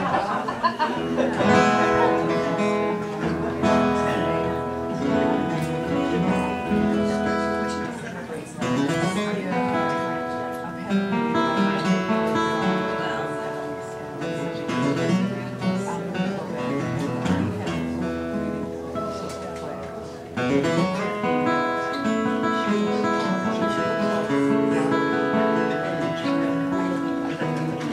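Solo acoustic guitar playing an instrumental tune, with the level dipping twice (about eight and twenty seconds in) before louder passages pick up again. Brief audience laughter comes near the start.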